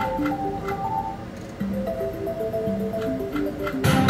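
Mystical Unicorn video slot machine playing its simple chiming reel-spin tune, one note at a time, with light ticks as the reels stop. Near the end a louder hit as a new spin begins.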